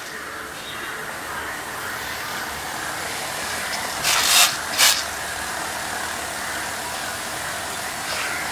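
Steady hiss of a gas stove burner and near-boiling water under a steel pot, with two short sharp sounds about four and five seconds in as a steel ladle lowers a tomato into the water.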